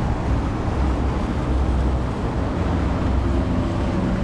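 Steady highway traffic noise, a continuous wash with a low rumble.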